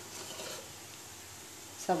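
Faint handling of stainless-steel kitchen bowls on a countertop over a low room hiss, then a woman starts speaking near the end.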